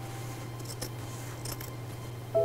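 A few crisp scissor snips, short sharp clicks, over a steady low hum and the fading tail of a piano note.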